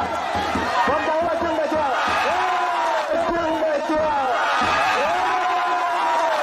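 Voices of a watching crowd: people talking and calling out in drawn-out, arching calls over general chatter.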